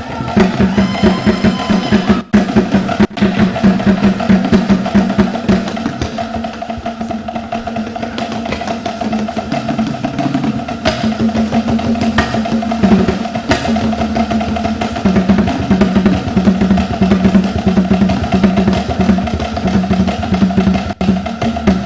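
Drum-led percussion music for a traditional cultural dance, playing loudly and continuously with a busy beat.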